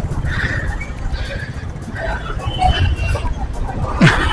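Road traffic noise: a steady low rumble with scattered indistinct voices and a brief high tone about three seconds in.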